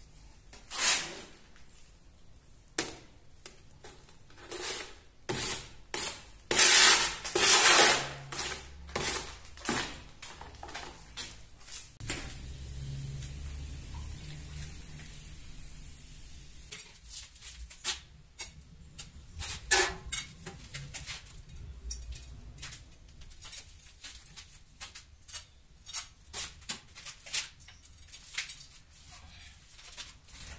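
Tile mortar being hand-mixed in a plastic bucket: repeated scraping and knocking of the mixing tool against the bucket, loudest a few seconds in. Later come scattered knocks and clicks.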